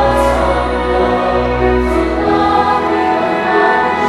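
A large choir singing a hymn in sustained chords, with a deep low note held under the first two seconds and sibilant consonants cutting through now and then.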